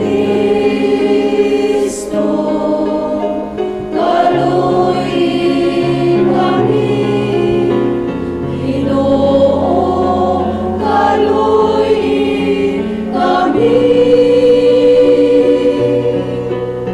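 Church choir of mostly women's voices singing a slow hymn of the Mass, holding long notes that move step by step.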